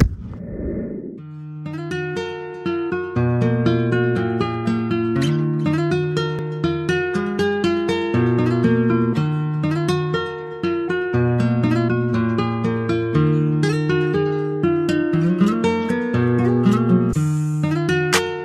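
Background music of plucked guitar notes in a repeating pattern. It begins about a second in, after a brief rushing whoosh.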